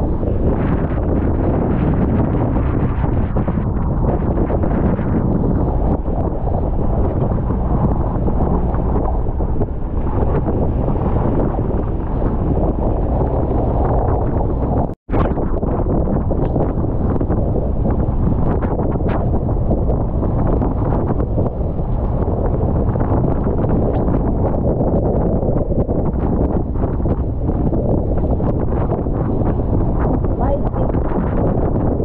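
Strong storm wind buffeting the microphone over the rush of rough sea and waves breaking along an outrigger boat's hull, a loud steady roar of noise. It cuts out for an instant about halfway through.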